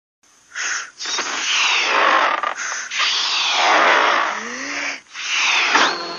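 Whooshing sound effects: loud bursts of rushing noise that swell and sweep in pitch, in four stretches with brief gaps, the last one rising sharply near the end.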